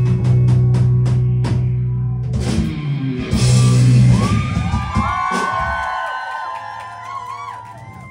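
Live rock band with bass, electric guitars and drums ending a song: a loud sustained chord under rapid drum hits, a final crash about three seconds in, then the chord rings out and fades while guitar notes bend up and down.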